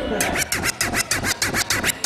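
A DJ scratching a vinyl record on a turntable: a fast run of back-and-forth strokes, about six a second, each with a short swoop in pitch.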